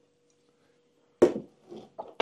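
Near silence, then about a second in a single knock as a plastic jug is set down on a wooden table, followed by a softer small knock.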